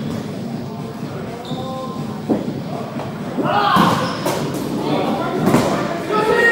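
Dodgeballs thudding against the floor several times, once about two seconds in and again in a cluster in the second half, among players' shouts, echoing in a large sports hall.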